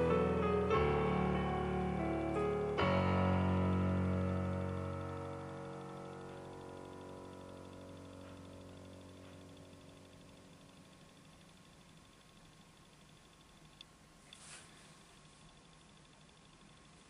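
Piano playing the closing chords of a melodic black metal track's outro. The last chord is struck about three seconds in and rings out, fading away over several seconds. Near the end come a single click and a brief soft noise.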